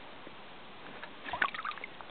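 Shallow stream water trickling, with a few small splashes about one and a half seconds in as a hand dips into the water beside a hooked brook trout.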